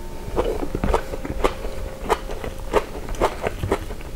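Close-miked chewing of onion omelette: a dense, irregular run of short mouth clicks and soft crunches.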